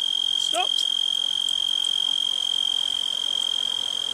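A cricket singing close by: one loud, steady, high-pitched trill with no breaks. About half a second in, a brief vocal exclamation.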